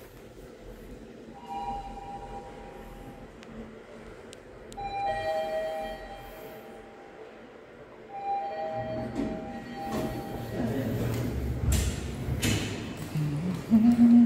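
Elevator chime sounding three times, a few seconds apart, each a two-note ding-dong lasting a second or two. Over the last few seconds a louder low rumble builds up as the car arrives.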